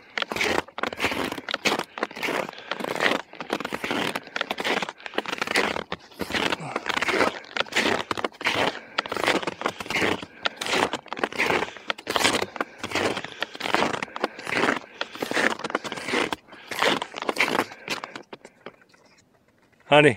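Snowshoe footsteps crunching in deep snow, a steady rhythm of about two steps a second. They stop a couple of seconds before the end.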